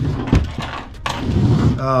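A man's voice, with a couple of short knocks from motorcycle helmets being handled and set down on a table: one sharp knock about a third of a second in, another about a second in. A drawn-out 'um' comes near the end.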